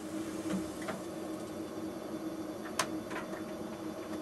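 A lit gas hob burner hissing steadily under a low hum, with a few light metallic clicks and clinks as an aluminium stovetop kettle is handled on the hob.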